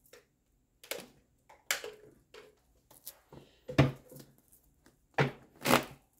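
A tarot deck being handled and shuffled by hand: a series of short, uneven bursts of card noise, loudest about four seconds in and again near the end.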